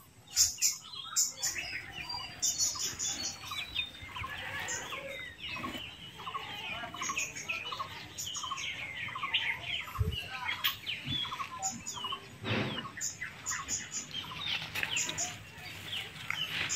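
Birds chirping and calling in short notes, with a regular run of short calls about twice a second through the middle and a few small clicks.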